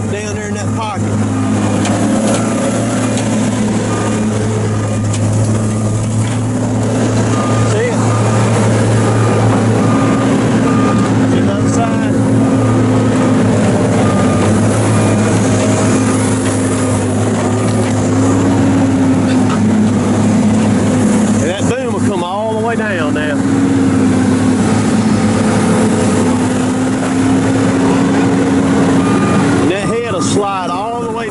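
Heavy diesel engine of a tracked logging machine running steadily under light load as the machine moves on a trailer, its pitch wavering slightly. A faint beep repeats at an even pace through the middle of the stretch.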